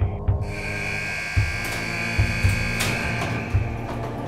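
An electric buzz, like a prison cell-door buzzer, starts about half a second in and holds steady until near the end. It sounds over dramatic background music with a low, pulsing beat.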